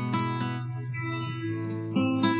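Instrumental karaoke backing track: guitar chords held over a steady low bass note, moving to a new chord at the very end.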